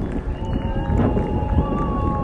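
Distant crowd clapping and cheering from the surrounding buildings in the nightly 7 pm applause for healthcare workers, a dense patter of many hands with a few long, steady high tones held over it.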